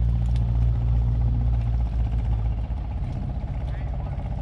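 A motor running steadily with a low hum of even tones, its deepest notes dropping away a little past halfway.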